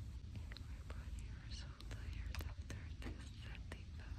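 Quiet whispering, breathy and without clear words, with a few faint clicks over a steady low room hum.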